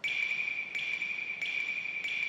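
A cartoon sound effect: one steady high-pitched tone, held without a break, with faint pulses about every two-thirds of a second.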